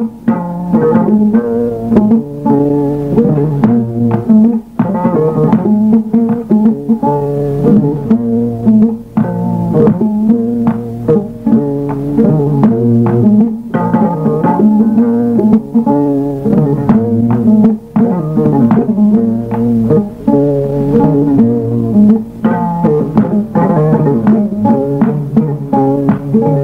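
Music played on plucked string instruments: a continuous run of quick plucked notes over a repeating low bass line.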